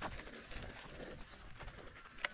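Mountain bike rolling over a bumpy sandy dirt track, with a sharp knock at the start and smaller rattles and rustle of the tyres after it. A bird calls faintly about a second in.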